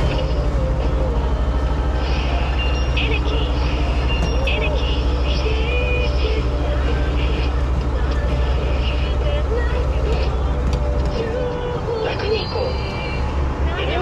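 Self-service petrol pump dispensing fuel into a car's tank: a steady low hum of the pump and the fuel running through the nozzle. The hum eases off about eleven seconds in, as the 3,100-yen preset amount is reached.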